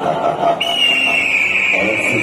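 A show soundtrack plays through a DJ loudspeaker system with voices. About half a second in, a steady high whistle-like tone enters and holds, sinking slightly in pitch.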